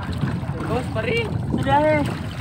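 Short voiced calls from people on a small boat, three brief rising-and-falling calls with the last one held longest, over a steady low rush of wind and water noise.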